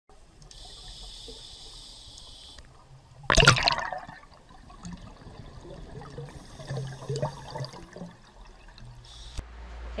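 Water sounds: a loud gushing burst about three seconds in, between two stretches of steady hiss, with scattered gurgles and a sharp click near the end.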